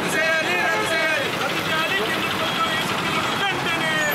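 Protesters' voices shouting slogans, with street traffic noise behind.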